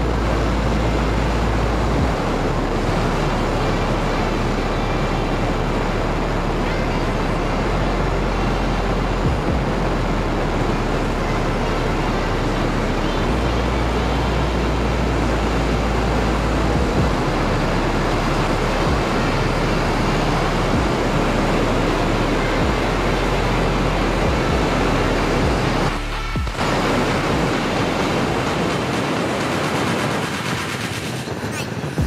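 Steady rush of wind and road noise from a motorcycle riding at speed, picked up on a helmet-mounted camera's microphone, dipping briefly near the end.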